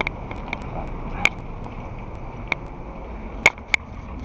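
Several sharp, irregular clicks and knocks over a steady background hiss, the loudest two close together near the end.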